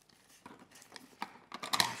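A few faint, small clicks of plastic puzzle pieces and toy trucks being handled on a table, in an otherwise quiet room; a man starts speaking near the end.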